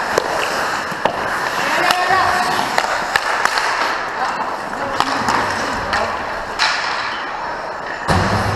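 Ice hockey skates scraping and carving on the ice, with sharp clacks of sticks and puck striking repeatedly throughout. Players' voices call out now and then.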